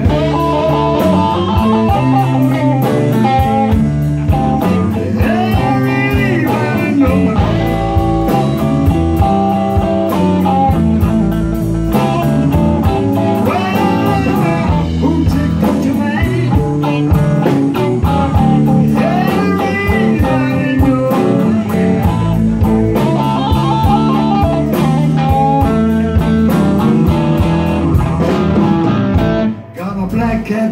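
Electric blues band playing an instrumental break: electric guitar lead with bent notes over electric bass and drums. The band drops out briefly near the end.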